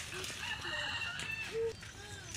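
A bird calling outdoors: one long held call from about half a second in, with shorter chirping notes around it and a brief louder note near the end.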